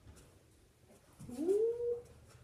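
A dog gives one short whining call that rises in pitch and then holds steady for under a second, starting a little past halfway through.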